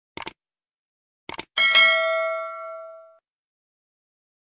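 Two mouse-click sound effects, each a quick double tick, then a bell ding that rings for about a second and a half and fades away.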